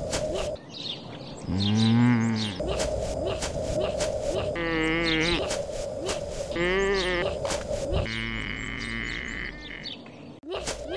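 A voiced cartoon creature gives three wavering, bleat-like cries, the first the loudest, over a steady soundtrack hum full of small clicks. A held high tone follows near the end.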